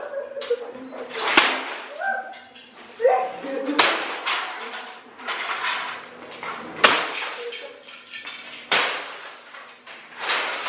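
A yellow-handled hammer smashing breakable objects: four loud crashes a couple of seconds apart, with debris clattering and clinking between the blows.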